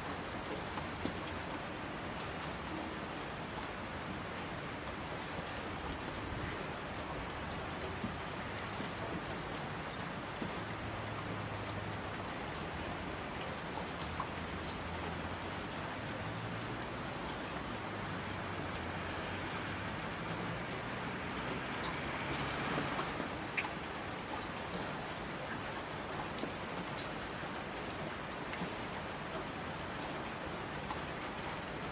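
Steady rain falling, with scattered louder drops and a low rumble through the middle of the stretch. About two-thirds of the way through, the rain briefly swells louder and brighter, then settles back.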